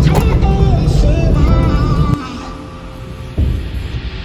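Inside a moving car: loud music with heavy bass and a wavering melody over road noise. After about two seconds it cuts to quieter music, with a single brief thump near the end.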